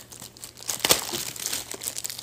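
Clear plastic wrapping crinkling as it is pulled off a small box by hand, with one sharper, louder crackle just under a second in.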